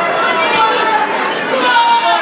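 Spectators in a large hall shouting and talking over one another, many voices overlapping at a steady level.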